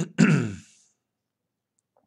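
A man briefly clearing his throat near the start: one short rasp whose pitch falls away.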